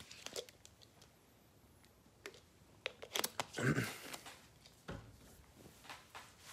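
Faint, scattered clicks and rustles of small objects being handled, with a short breathy or rustling burst about midway and a soft knock near the end.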